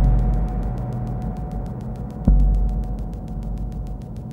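Dark electronic music: a deep bass thud that dies away slowly, struck at the start and again a little over two seconds later, under a held mid-pitched tone and a rapid, even high ticking of about eight clicks a second.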